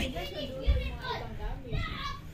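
Children's voices, talking and calling out, with a low thump about two thirds of a second in.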